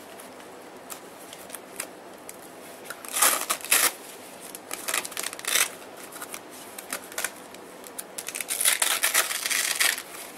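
Padded camera-bag dividers and gear being rearranged by hand: nylon fabric rustling and scraping, with short loud rasping rips of hook-and-loop fastener being pulled apart and pressed, once about three seconds in, again halfway, and in a quick series near the end.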